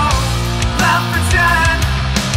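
Alternative rock band recording with a grunge sound: drums keep a steady beat under a sustained bass line, with a pitched melodic line sliding up and down over it.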